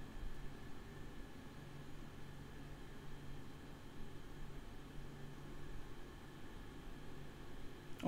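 Faint room tone: a low steady hiss with a faint steady hum underneath, and no distinct events.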